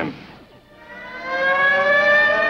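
An air-raid siren winding up, starting about half a second in, its pitch slowly rising as it grows louder.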